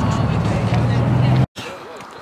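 A motor vehicle going by close to the microphone: a steady engine hum under loud road noise, which cuts off abruptly about one and a half seconds in, leaving a much quieter background.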